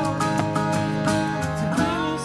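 Live acoustic band music: strummed acoustic guitar in a steady rhythm over upright double bass, with sustained held chord notes.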